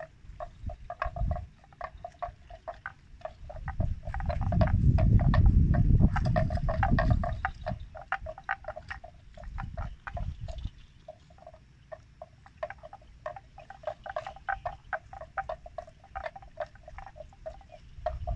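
Water buffalo grazing: a rapid, uneven run of crisp tearing and crunching clicks as it crops and chews grass. A low rumble swells for a few seconds in the middle.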